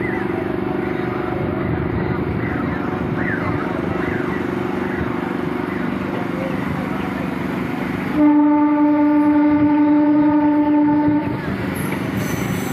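A local passenger train running along the track, heard from on board as a steady rumble. About eight seconds in, its horn sounds once, one long steady blast lasting about three seconds.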